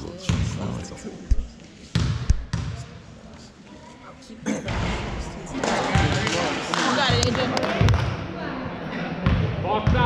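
A basketball bounced several times on a hardwood gym floor in the first few seconds, a free-throw shooter dribbling at the line. Voices of spectators follow, echoing in the gym.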